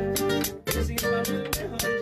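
Two nylon-string acoustic guitars playing an instrumental passage of a son, with no singing. Sharp strokes come about five times a second, with a brief break just past half a second in.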